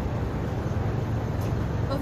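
Steady low rumble of city street traffic, with no voice over it.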